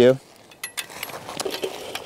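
Faint metallic clicks and rattles as the folding metal leg frame and slatted metal top of a portable camping table are handled.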